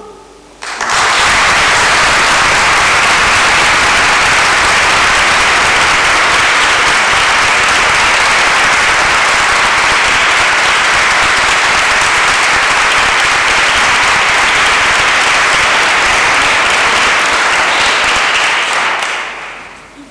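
Audience applauding: the applause breaks out suddenly about a second in, holds steady, and dies away near the end.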